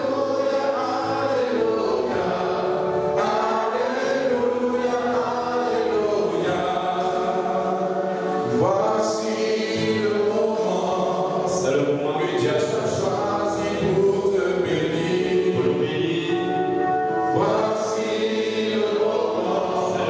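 A congregation singing a worship song together, many voices holding long sung notes.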